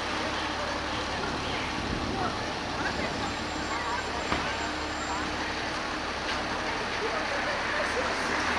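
Busy city street ambience: a steady wash of road traffic from passing buses and cars, with indistinct voices of passers-by. A single sharp click about four seconds in.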